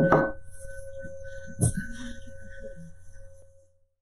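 A meditation singing bowl ringing with a steady tone, with two brief knocks, one at the start and one about one and a half seconds in. The ringing dies away to silence shortly before speech begins.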